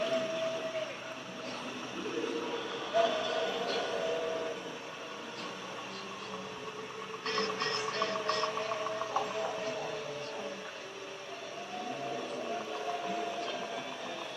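Playback of a field recording of long, held, slightly wavering howl-like calls that the exhibit presents as Bigfoot vocalizations, heard through headphones. The calls come again and again, some overlapping, over a steady hiss.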